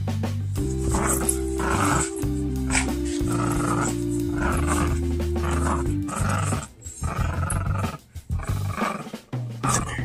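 Background music with held low notes, which drops out about six seconds in and returns near the end. Over it, a dog growls in short bursts while tugging on a towel.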